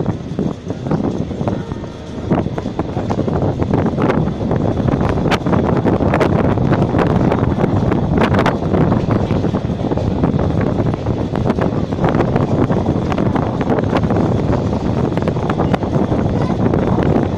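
Train coach rolling out of a station and gathering speed, wheels clicking over rail joints and points, with wind buffeting the microphone. The noise grows over the first few seconds, then holds steady.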